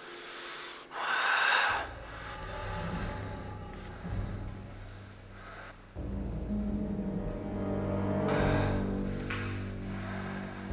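Two loud breaths close to the microphone in the first two seconds, then background music with low held notes, with more breathing near the end.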